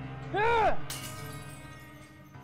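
A man shouts, then a small plate thrown against a wall smashes about a second in, the crash of breaking pieces trailing off.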